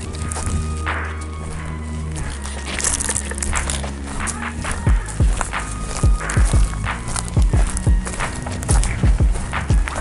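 Background music with held, stepping notes throughout. From about five seconds in, footsteps on a dirt forest trail thud close to the microphone, about two a second, louder than the music.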